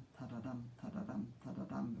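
A woman's voice chanting rhythm syllables, 'dum ta, dum ta', about five or six syllables in a steady repeating pattern: the shuffle-bowing rhythm that a jig should not slip into.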